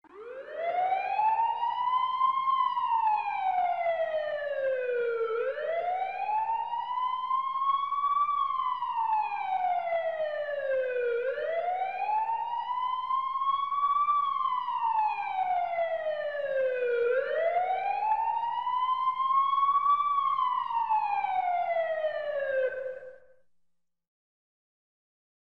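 Emergency siren in a slow wail, its pitch rising for about two and a half seconds and falling for about three, repeated four times before it fades out near the end.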